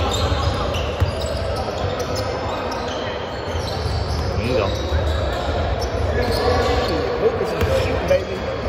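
Basketball game in a large gym: a basketball bouncing on the hardwood court, with short high sneaker squeaks and players' and spectators' voices.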